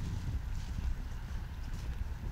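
Wind buffeting the microphone as a low, uneven rumble, with a few faint crunches of footsteps on snow.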